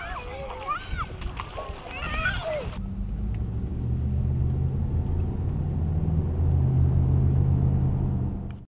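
Young children calling out with high, gliding voices while splashing through a puddle, cut off suddenly about three seconds in. After that comes a steady low hum of a car engine heard from inside the cabin.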